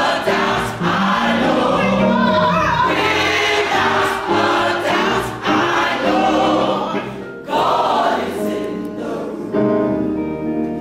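Mixed-voice gospel choir singing together in full voice, with a brief break between phrases about seven seconds in.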